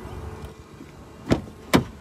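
Two sharp knocks about half a second apart, over a low background rumble, as a person climbs out of a car.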